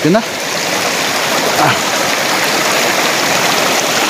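Steady rushing of a mountain stream or cascade, an even hiss of running water.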